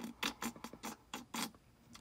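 A fingertip tapping and rubbing across a handheld touchscreen display, making a faint run of about ten short scratchy noises.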